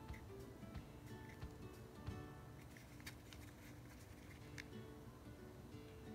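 Quiet background music of plucked guitar notes, with a few faint clicks.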